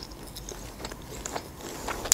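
Close-miked mouth sounds of someone chewing a soft fried dough ball (lokma) with closed lips: quiet, scattered small clicks and smacks.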